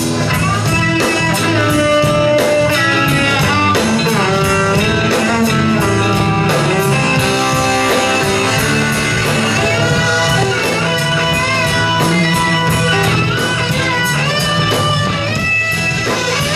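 Live blues-rock band playing an instrumental passage: an electric guitar lead with bent notes over bass and a steady drum beat.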